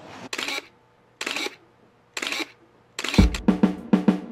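A camera shutter firing three times, about a second apart. Near the end, music starts with a run of drum hits.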